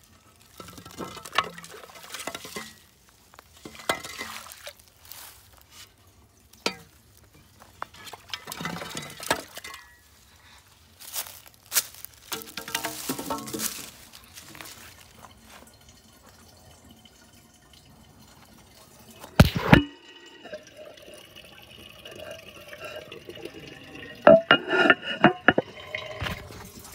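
Irregular clunks and scrapes of wooden boards and a plastic container being handled, with sloshing and trickling water. One loud sharp knock comes about two-thirds of the way in, and water then runs steadily with a faint whistling tone.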